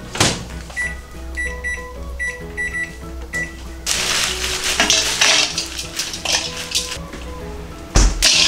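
A knock from the microwave door closing, then a string of short high electronic beeps as the microwave's keypad is pressed to set 600 W and the time. About four seconds in, ice cubes are poured from a bag into a stainless steel mixing bowl, rattling and clattering loudly against the metal for a few seconds.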